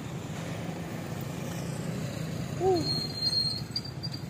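Road traffic going by with a steady low rumble. A short pitched note rises and falls about two and a half seconds in.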